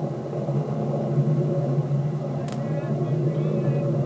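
Steady low rumble of a ballistic missile's rocket motor as it climbs away, heard through a small playback speaker. A single sharp click comes about two and a half seconds in.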